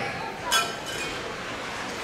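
One sharp clink with a brief ring about half a second in, from play at the net during a ringette game on ice, over the hollow background of an ice rink.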